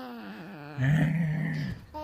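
A man's low, drawn-out playful growl, held steady for about a second near the middle.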